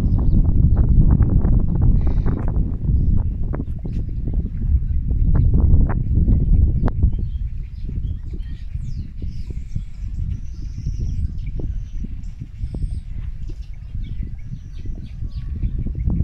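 Birds chirping and calling over a loud, uneven low rumble with scattered knocks. The rumble is heaviest in the first half; the chirps are most frequent in the second half.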